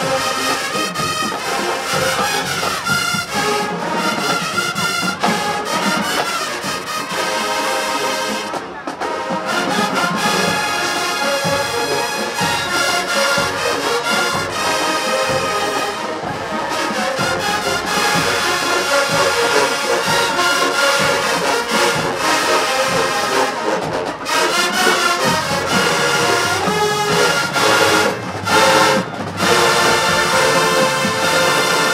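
Marching band brass section playing loudly, trumpets and trombones in full chords, with brief breaks between phrases and a few short separated hits near the end.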